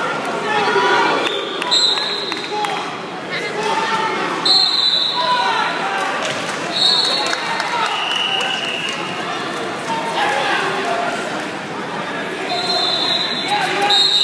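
Voices and chatter echoing in a large gymnasium. Several short, high, steady tones sound over them about 2, 5, 7 and 8 seconds in, and again near the end.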